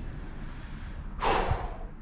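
A man's quick, audible breath close to the microphone, lasting about half a second, a little over a second in, over a low steady background rumble.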